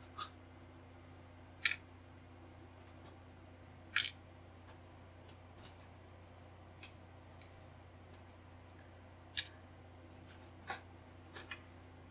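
Sprue cutters snipping grey plastic model parts off the sprue: sharp, irregular snaps about one to two seconds apart, three of them louder than the rest.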